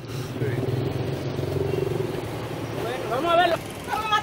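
A motor vehicle's engine running steadily close by, a low even hum, with a few words of a voice over it about three seconds in.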